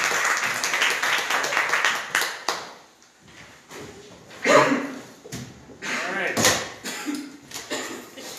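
Audience applauding in a hall; the clapping dies away about two and a half seconds in. Scattered voices and a few knocks follow.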